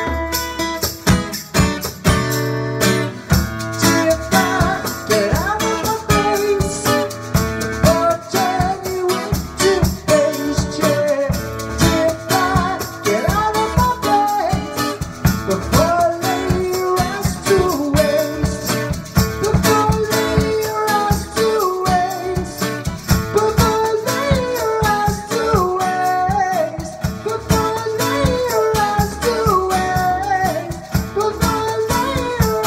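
Acoustic guitar strummed with a man singing over it and percussion keeping a steady beat; the voice comes in about four seconds in.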